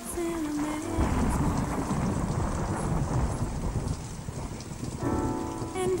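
Recorded rain and rolling thunder sound effect within the music mix, a low, rumbling wash of noise that takes over after a sung note ends about a second in. A sustained chord enters under it near the end.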